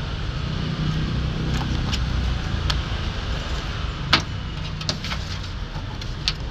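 Steady low rumble of motor noise in the background, with scattered sharp clicks and rustles from a paper instruction sheet and a plastic airbrush case being handled; the loudest click comes about four seconds in.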